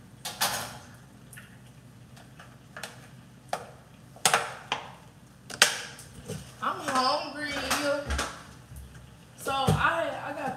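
Kitchen handling sounds: several sharp, separate clicks and knocks as bottles and cookware are picked up and set down on a counter and stove. In the second half a voice is heard.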